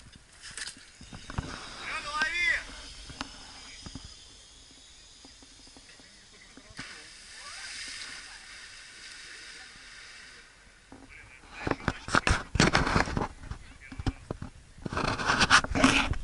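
Water splashing and hissing as a zipline rider's body skims across the surface of a river, an even spray sound for a few seconds in the middle. A wavering voice cry comes about two seconds in, and loud rustling and knocks fill the last few seconds.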